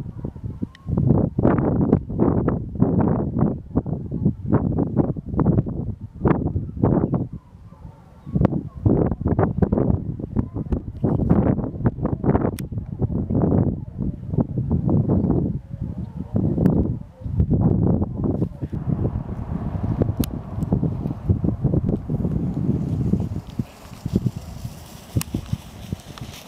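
Wind buffeting the microphone in irregular gusts, with Penn-Marydel foxhounds faintly giving tongue in the distance as the pack runs. The gusts ease in the last few seconds.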